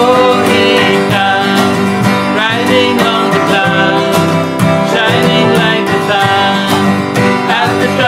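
Acoustic guitar strummed in a steady rhythm while two male voices sing a worship song together.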